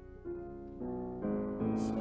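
Grand piano playing a soft interlude of held chords, a new chord about every half second, growing louder step by step. A short breath-like hiss comes near the end.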